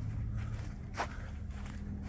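Footsteps of a person walking across a grass lawn, a few soft steps with one sharper tick about a second in, over a steady low hum.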